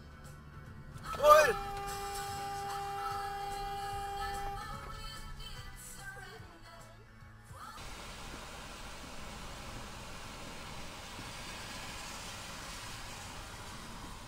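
A brief loud pitched whoop, then a steady held tone for about three seconds, from music or an added sound effect. From about seven and a half seconds in, steady tyre and rain noise on a wet road is heard inside a car.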